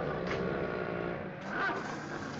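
A car's engine running steadily as the car drives.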